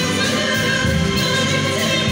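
A woman singing in a classical style with vibrato, accompanied by a string orchestra of violins and cellos.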